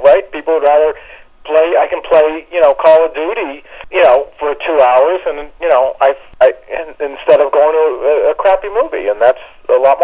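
A person talking continuously with short pauses. The voice sounds thin and narrow, as if carried over a phone or call line.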